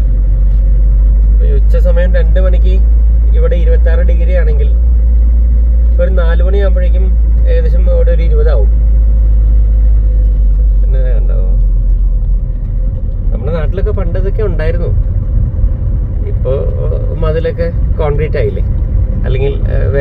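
Steady low rumble of a car driving along a road, heard from inside the cabin, easing a little about twelve seconds in, with a person talking at intervals over it.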